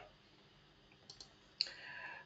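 Quiet pause with a couple of faint short clicks about a second in, then another sharper click and a soft faint noise near the end.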